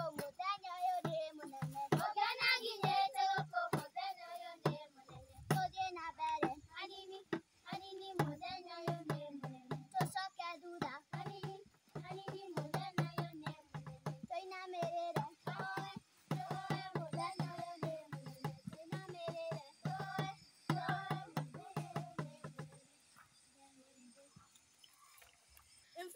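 A group of young girls singing a folk song together, over a regular beat of sharp knocks. The singing stops about three seconds before the end.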